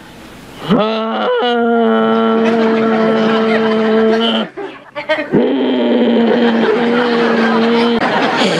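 A voice chanting two long, steady held tones going into a trance: the first lasts about three and a half seconds, and after a short break the second is held on through the end.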